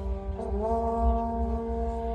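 Marching band brass holding a sustained chord, which shifts to a new chord about half a second in and is then held.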